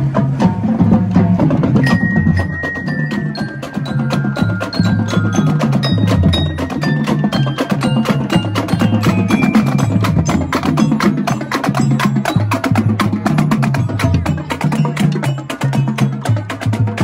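Marching band glockenspiels (bell lyres) playing a melody in runs of falling notes, over a drum line of snare drums, tenor drums, cymbals and bass drums keeping a steady marching beat.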